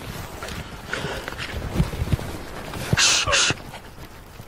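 Footsteps and rustling in forest undergrowth as people shift and crouch behind a tree, with scattered dull thuds and a louder brushing rustle about three seconds in.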